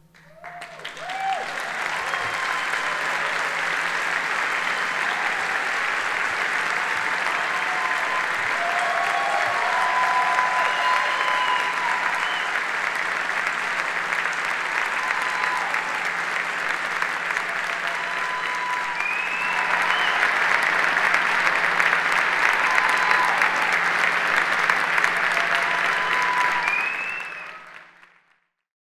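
Audience applauding, with scattered cheers and whoops over the clapping. It rises quickly at the start, swells a little about two-thirds of the way through, and fades out at the end.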